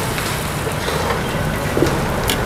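Bánh xèo batter sizzling in wide steel pans over open burners, a steady noisy hiss with a low steady hum under it.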